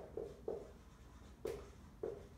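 Marker writing on a whiteboard: a few short, separate pen strokes as a word is written.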